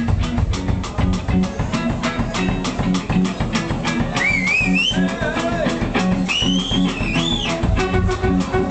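A live rock band playing an instrumental passage: a steady drum-kit beat under bass guitar and guitar, with a high lead line that bends and wavers, coming in about four seconds in.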